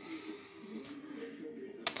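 Quiet workshop room tone with a faint steady hum and light handling noise, broken by one sharp click near the end.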